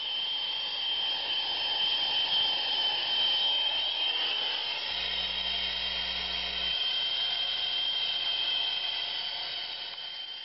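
Gas torch flame hissing steadily as it heats a thin copper vent pipe to solder a saw cut closed, with a thin, steady high whistle over the hiss.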